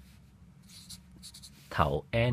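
Felt-tip marker writing on paper: a run of faint, short scratching strokes as letters are drawn, then a brief spoken word near the end.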